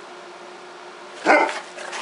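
A single short, loud animal call about a second in, over a steady faint hiss, followed by a few fainter short sounds near the end.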